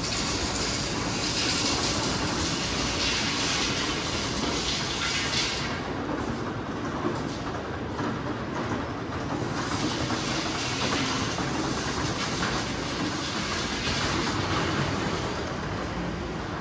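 A rail vehicle running along its track: a steady rumble with a hiss that swells in the first few seconds, eases off about six seconds in, and comes back for the second half.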